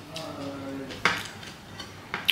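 Fingers mixing rice on a plate, with one sharp click against the plate about a second in.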